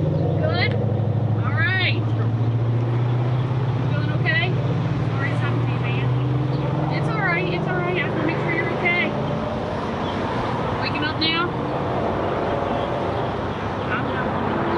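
A vehicle engine idling with a steady low hum, which drops away about nine and a half seconds in. Indistinct voices can be heard over it.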